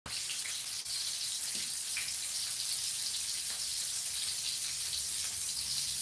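Sliced shallots sizzling in oil in an aluminium wok on a gas stove: a steady hiss with a few faint crackles.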